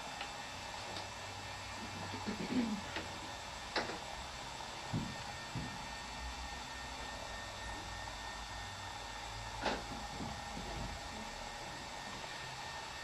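A few soft taps and short scrapes of a brush and a small wooden tool pressed and rubbed over a paper collage piece to squeeze out the excess glue, over quiet room tone with a faint steady hum.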